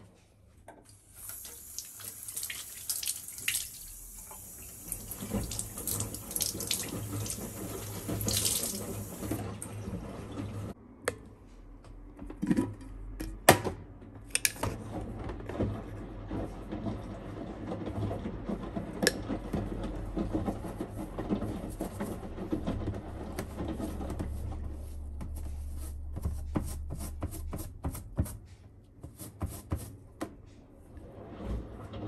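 Water running from a bathroom sink tap onto a shirt being wetted, a steady hiss for about eight seconds that then stops. Scattered knocks and clicks of handling follow, the loudest a single sharp knock about halfway through.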